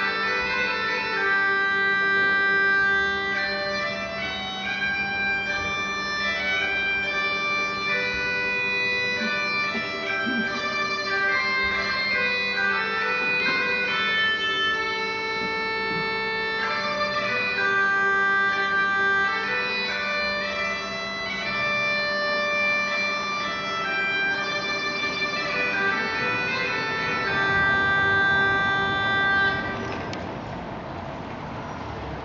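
Solo bagpipes playing a slow tune: a steady drone beneath a melody of held chanter notes, which stops abruptly at the end.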